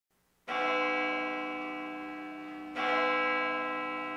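A large bell tolling: struck twice, a little over two seconds apart, each stroke ringing on with many overtones and slowly fading.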